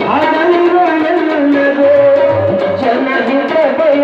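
Live Kannada devotional song: a male voice singing long, gliding notes over harmonium, with tabla strokes underneath.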